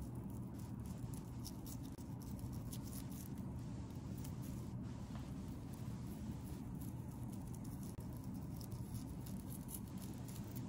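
Faint, scattered light ticks and taps of a scalpel slicing down through a sheep brain and meeting the plastic cutting board, over a steady low room hum.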